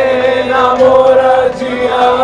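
Pop band playing live, with a long steady note sung over the band, heard from among the audience.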